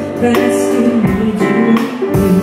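Live band music: a woman singing into a microphone over keyboard and a drum kit played with sticks, with sustained chords, a low bass line and a few drum and cymbal hits.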